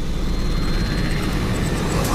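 A dense, deep rumbling whoosh of trailer sound design, steady and building slightly in loudness.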